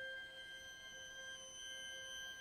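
Soft classical chamber music: a high note held steady and unchanging, with no new attacks, in a hushed passage for the ensemble.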